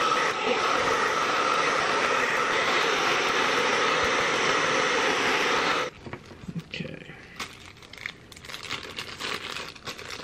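Handheld hair dryer blowing steadily, aimed at an iPad's screen to soften the glue that holds it, then switched off abruptly about six seconds in. After it, soft crinkling as a small plastic bag of repair tools is handled.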